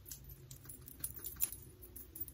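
Faint rustling and light, irregular clicking as a powder brush is swept over the cheek to apply blush, with the beaded bracelets on the brushing wrist clinking.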